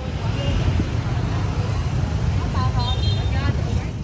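Busy street with motorbike engines running close by at walking pace, a steady low rumble, and people talking in the crowd, with a few voices standing out near the end.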